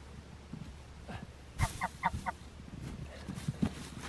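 Chickens calling: three short, quick clucks about two seconds in, just after a dull thump as a straw bale is set down on the snow.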